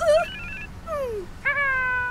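A short two-note electronic phone beep, followed by a cartoon character's wordless vocal sounds: a brief falling whimper, then a long held worried hum.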